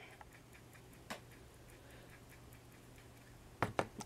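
Quiet room with a low steady hum and a few faint clicks and taps as a flat paintbrush is dipped and worked in a small pot of dark brown paint: one tap about a second in, a couple more near the end.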